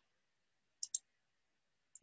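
Two quick computer mouse clicks, a fraction of a second apart, about a second in, with near silence around them.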